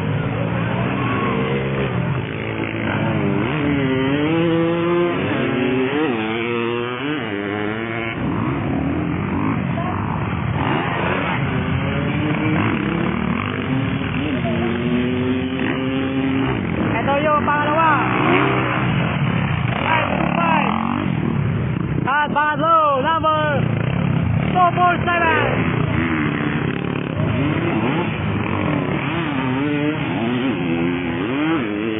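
Motocross dirt bike engines racing on the track, several at once, revving up and down as they accelerate and shift. About two-thirds of the way through, one bike revs in quick rises and falls.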